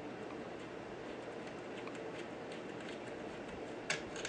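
Faint, scattered ticks of a small screwdriver turning a screw into a sewing machine's metal needle plate, with a sharper click just before the end.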